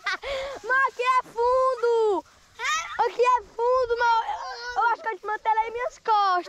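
Children shouting and squealing without words, in a string of high-pitched calls, some of them long and held.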